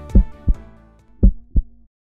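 Heartbeat sound effect: two lub-dub beats, each a pair of low thumps, over the fading tail of the outro music, then a sudden cut to silence.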